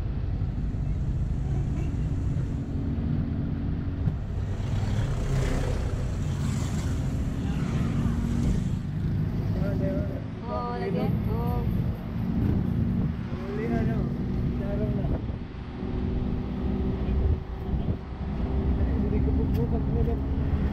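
A vehicle engine running steadily with road and wind noise, heard from inside an open-sided vehicle on the move. A few short voice sounds rise and fall over it around the middle.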